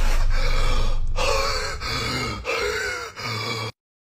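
A person's wordless, startled vocal outbursts: four short cries in a row, then the sound cuts off suddenly.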